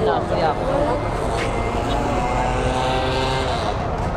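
A vehicle engine running at a steady pitch, with a voice briefly heard at the start.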